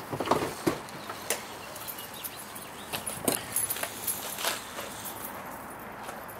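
Scattered knocks and clunks of hard gear cases being shifted and stacked inside the cargo area of a van, several separate thumps spread over a few seconds.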